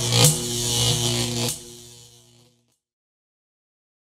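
A short end-of-video sound effect: a sudden swoosh of noise over a held low chord. The swoosh drops away about a second and a half in, and the chord fades out under three seconds in.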